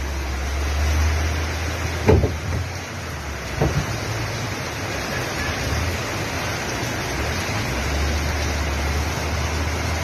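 Steady rushing noise of a flash flood and debris flow, with a heavy low rumble, and two brief louder sounds about two and three and a half seconds in.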